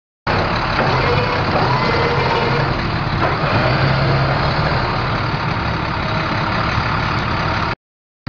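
International DT466 7.6-litre inline-six turbo diesel in a 2006 International 4400 truck, running steadily, cutting off abruptly near the end.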